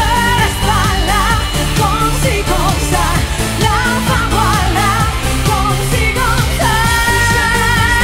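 Female lead vocalist singing a pop-rock song over a live band's drum beat and bass, her voice with a marked vibrato, ending on a long held note.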